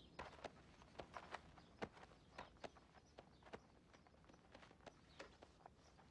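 Near silence, broken by faint, irregular soft clicks and taps, about two or three a second.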